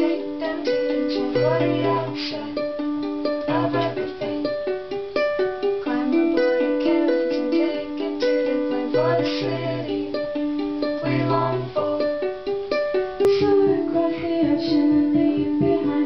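Ukulele picking a melody over sustained low chord notes from another instrument, played in a small room. About thirteen seconds in, the sound changes abruptly to a fuller live band.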